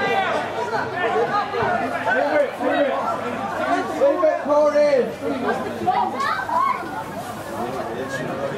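Several people's voices talking over one another in indistinct chatter.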